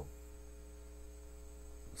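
Faint, steady electrical mains hum with a few steady low tones in a pause between words.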